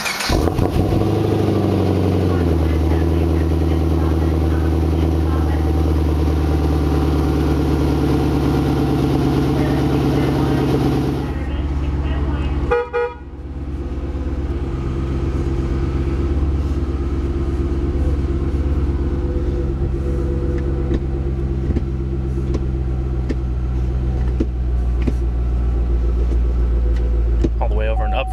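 Supercharged 6.2 L LS3 V8 of a 2010 Camaro SS, through a stainless steel dual exhaust, catching on start. It flares up briefly and settles within about two seconds into a steady idle. After a short break about 13 seconds in, the same idle continues, heard more muffled from inside the cabin.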